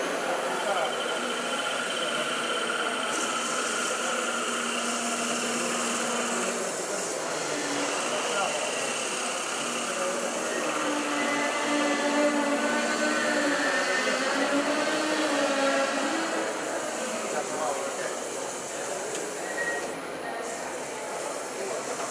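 Wood lathe running steadily with the spinning workpiece being worked by hand: a continuous hum and hiss whose pitch wavers slightly over the stretch.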